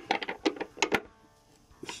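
Hand socket ratchet clicking in quick succession as it turns a nut down on a carriage bolt, stopping about a second in.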